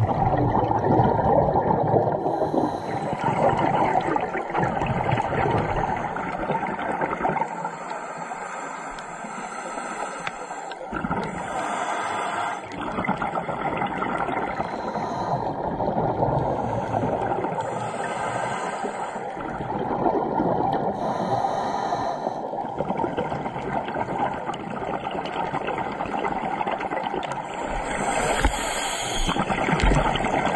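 Muffled underwater noise with the bubbling gurgle of scuba divers' exhaled air, surging every few seconds.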